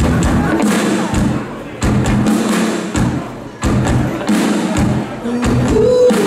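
Live dance band playing through a stage PA, with a steady thumping drum beat about every 0.6 seconds under the bass and a voice.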